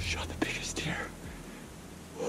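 A person whispering for about a second, over a low hum that fades out.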